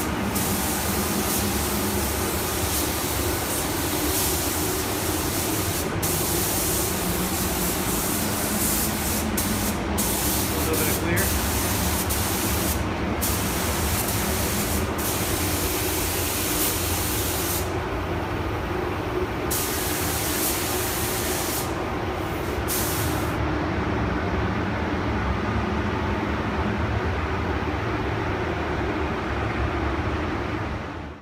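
Gravity-feed paint spray gun hissing as black paint is sprayed, stopping briefly several times as the trigger is released and fading out about three-quarters of the way through. A steady low hum runs underneath throughout.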